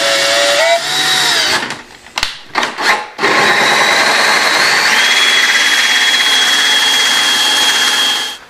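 Power drill boring into a hard plastic flood tray. A small bit whines through for about a second and a half, slowing in pitch near the end. After a short pause, a hole saw cuts steadily through the plastic with a high whine for about five seconds.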